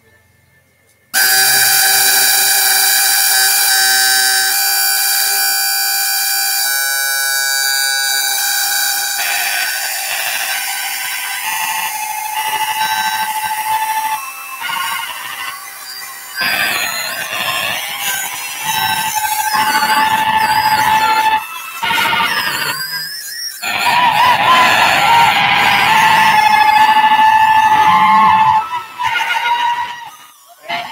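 Loud improvised electronic music from a live laptop set: dense, sustained synthesized tones that start abruptly about a second in. In the second half the sound turns more broken, with a wavering tone and brief cut-outs, and it drops away near the end.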